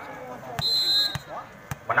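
Thuds of a volleyball bouncing on a hard court, about three of them, with a short referee's whistle blast between the first two.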